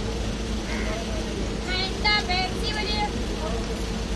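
Steady running rumble of a passenger train accelerating out of a station, heard from a coach window, with a constant hum under it. Near the middle a high-pitched voice calls out briefly in a few short bursts.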